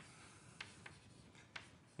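Faint chalk writing on a blackboard: a soft scratching with three short taps as the chalk strikes the board.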